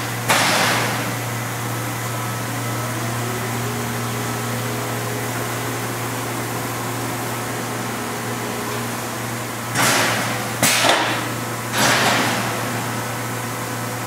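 Industrial rotary thermoformer running: a steady low machine hum, with a motor tone that rises about three seconds in and then holds for several seconds. Sudden loud bursts of noise cut in once just after the start and three more times close together late on, each dying away within about half a second.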